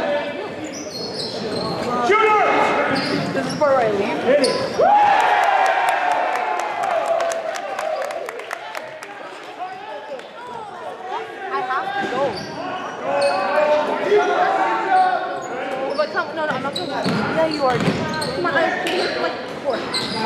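Basketball play in a gym: a ball bouncing on the court floor and sharp squeaks and clicks from the players, with voices calling out over it.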